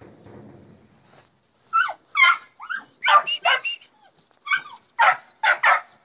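Puppies yapping: a rapid run of short, high-pitched barks and yips that starts a little under two seconds in and keeps going.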